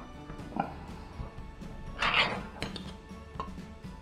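Ring-pull lid of a metal food tin being pulled open and peeled off: a few small metal clicks, then a short scraping tear of the lid about two seconds in.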